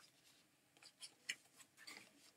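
Near silence in a small room, broken by a few faint, short clicks and rustles.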